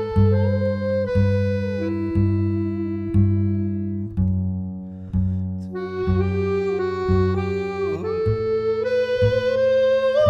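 Instrumental acoustic jazz track: a held melody line that slides between some notes, over plucked double bass notes at about one a second.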